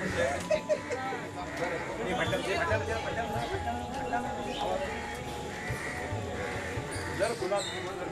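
Indistinct voices of several people, with a few light high clinks near the end.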